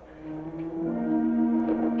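Dramatic background score fading in: sustained held notes that swell in loudness, the chord shifting to a new note about a second in.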